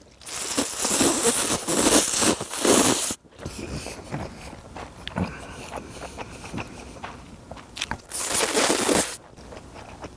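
A person slurping hot kalguksu noodles: one long slurp of about three seconds at the start and a shorter one of about a second near the end.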